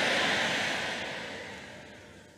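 Large congregation applauding in a big hall, steadily dying away toward the end.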